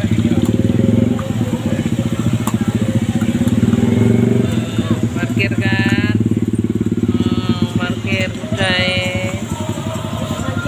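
A motorcycle engine running steadily close by, a fast low pulsing. Brief voices come in about halfway and again near the end.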